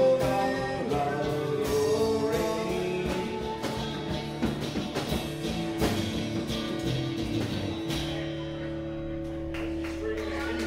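Live acoustic band playing the closing bars of a folk-rock song: strummed acoustic guitars with voices. Near the end the strumming stops on a final chord that is left to ring.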